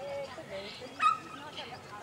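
A dog giving one short, sharp bark about a second in, during an agility run.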